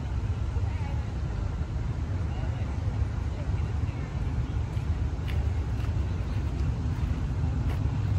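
Steady low rumble of distant road traffic in the outdoor background, with no single event standing out.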